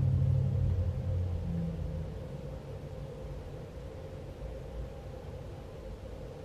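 Low rumble that fades away over the first two seconds, with a faint steady hum underneath.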